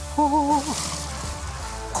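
Water running from the released tank into a clear plastic bucket, a steady hiss, under background music. A short wavering tone sounds about a quarter of a second in.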